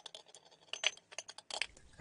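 Metal carburetor body and small parts being set into the stainless steel tank of an ultrasonic cleaner: a run of light, irregular clicks, clinks and scrapes of metal on metal, one clink ringing briefly a little under a second in.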